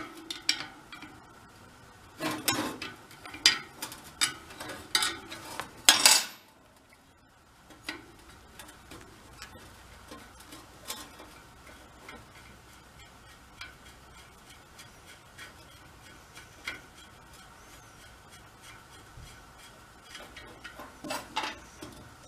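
Metal clinks and knocks of a wrench and loose steel hub parts being worked on a spoked moped wheel hub: several sharp clinks in the first six seconds, then lighter scattered ticks as the hub is taken apart by hand.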